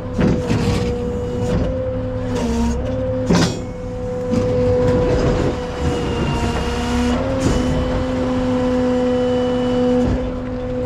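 Peterbilt rollback tow truck running with a steady droning hum, and a sharp metallic clank about three and a half seconds in.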